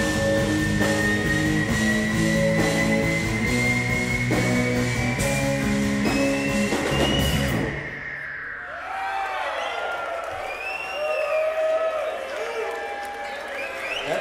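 Live rock band with electric guitars, bass and drums playing, over one long held electric guitar note that slowly climbs in pitch. About eight seconds in the band stops and the held note slides down as the song ends. The crowd then cheers and whoops.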